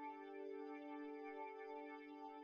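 Quiet, slow ambient music: a sustained, unchanging chord of held drone tones with no beat or percussion.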